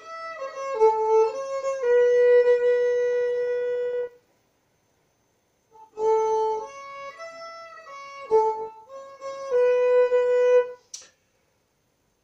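Solo fiddle playing the opening of a Swedish polska in A major: a short bowed phrase ending on a long held note, a pause of about two seconds, then the phrase played again, ending on another held note. A short sharp click comes near the end.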